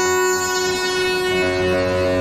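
Korg MS-20M analog synthesizer, sequenced by an SQ-1, playing a sustained drone of several held notes, with some notes changing about one and a half seconds in.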